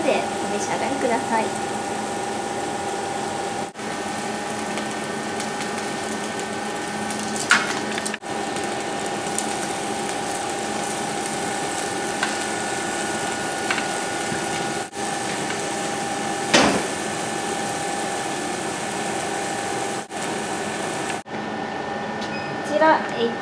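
Squid-mouth skewers sizzling in a rectangular pan on an induction hob, under the hob's steady electric whine. There is a metal clink of tongs against the pan once or twice, the loudest a little past halfway.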